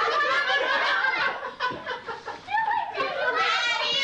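A group of people talking over one another and laughing, with a run of laughter near the end.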